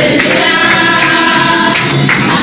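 Group worship singing of a Spanish-language praise song, led by a woman singing into a microphone.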